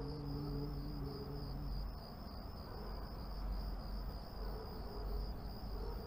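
Crickets chirping in a steady, high, slightly pulsing trill, the night-time ambience of an outdoor scene.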